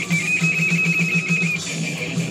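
Distorted electric guitar music: a high note held with a slight wavering vibrato for about a second and a half, over a fast, evenly repeating low chugging rhythm.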